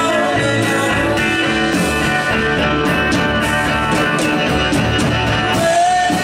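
Live band playing an instrumental passage: a hollow-body electric guitar and an acoustic guitar strummed over a steady drum beat.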